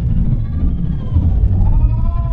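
A spectator's long drawn-out shout from the sideline, its pitch rising and then falling, over a heavy rumble of wind on the microphone.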